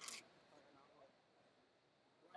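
Near silence: faint arena room tone with distant, indistinct voices, after a brief hiss right at the start.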